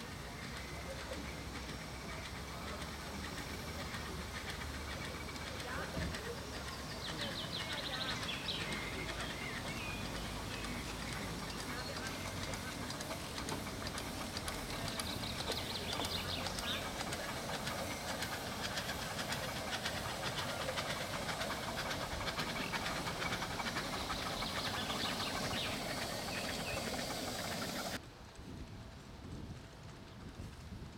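Ride-on live-steam model locomotive running across a bridge, with steam hissing and wheels clicking on the track. The train sound cuts off suddenly near the end, leaving quieter outdoor background.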